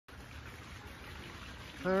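Faint, steady trickle of running water, with no distinct splashes.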